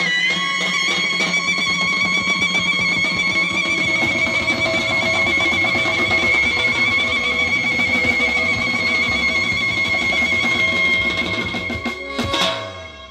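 Azerbaijani wedding-band music: a clarinet holds one long high note over button accordion, keyboard and drum kit, with a low bass line slowly rising and falling underneath from a few seconds in.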